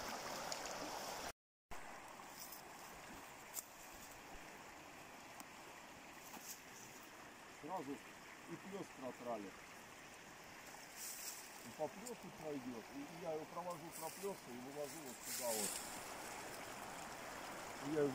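Steady rush of water from a shallow river riffle, faint and even. Quiet, indistinct voices come and go in the middle, with a few light clicks.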